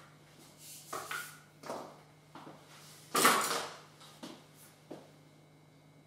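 Light knocks and scrapes of a cake board and a clear plastic dowel being handled on top of a cake, with one louder scraping rustle about three seconds in.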